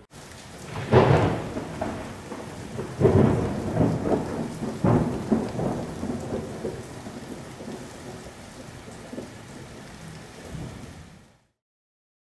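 Thunderstorm sound effect: steady rain with rolls of thunder, the loudest about one, three and five seconds in, then gradually fading away and cutting off shortly before the end.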